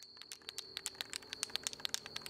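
Spray paint can being shaken, its mixing ball rattling inside in a quick, uneven run of quiet clicks, with a faint steady high-pitched tone behind.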